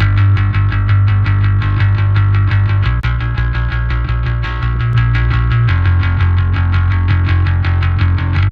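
Gritty, distorted electric bass guitar playing a driving riff of evenly repeated notes, with the pitch shifting a couple of times. It is an on/off comparison: partway through, the bass bus's EQ and compressor chain is switched to bypass, then back on.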